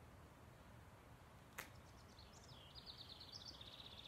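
A small songbird sings faintly: a short phrase of quick high chirps that runs into a rapid trill near the end. A single sharp click comes about a second and a half in.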